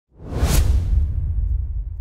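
A whoosh sound effect that swells up from silence to a sharp hit about half a second in, followed by a deep low rumble that slowly fades.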